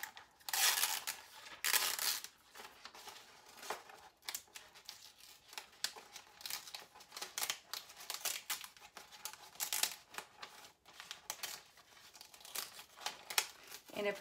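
Cricut Infusible Ink transfer sheet being weeded by hand: the ink sheet cracking and crinkling as pieces are broken off and peeled from its clear carrier film. Two longer crinkles in the first two seconds are the loudest, followed by a run of small, irregular crackles.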